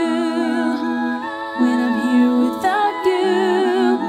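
Multitracked a cappella vocals by a single female singer: layered voices hold sustained, wordless chords while the lowest part sings a bass line that steps from note to note.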